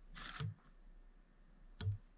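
Faint handling noises from a whip-finish tool and thread at a fly-tying vise during a whip finish: a brief rustle just after the start, then a sharp click near the end.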